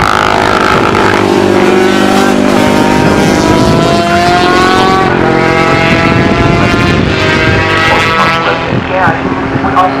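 Classic racing motorcycle engines accelerating past on the circuit, the engine note climbing in pitch in two long sweeps. Near the end the engine sound breaks up and fades.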